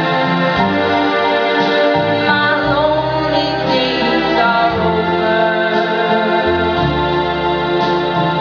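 A woman singing a ballad into a handheld microphone over instrumental accompaniment, holding long notes with vibrato while the bass line moves underneath.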